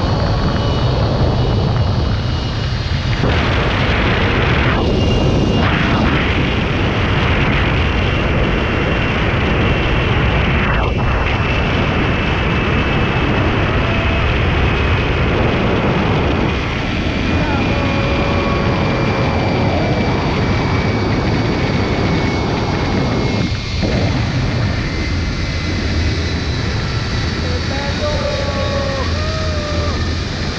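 Rushing wind buffeting a GoPro microphone during a fast tandem zipline ride. Under it a thin, steady high whine, the trolley pulleys running along the steel cable, slowly falls in pitch.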